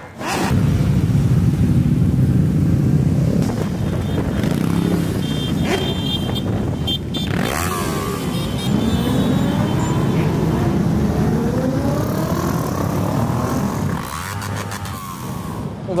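A large group of motorcycles running and revving together, many engine notes rising and falling over one another.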